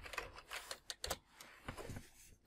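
Computer keyboard keys tapping softly as a short layer name is typed, a scatter of light clicks with a quick pair of sharper ones about a second in.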